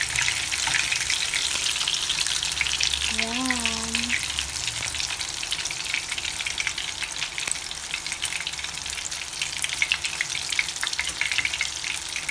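Breadcrumb-coated fish fillets frying in hot oil in a small pan: a steady sizzle with dense crackling of spattering oil.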